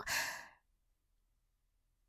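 A short, breathy sigh in a woman's voice, lasting about half a second, then silence.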